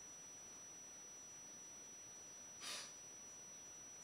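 Near silence: steady faint hiss, broken once about two and a half seconds in by a short soft breath.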